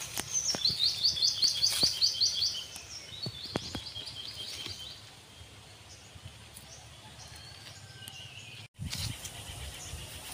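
A songbird singing a fast series of repeated high notes, about six a second, for roughly two seconds, then a shorter, quieter run. A few sharp clicks come through as well.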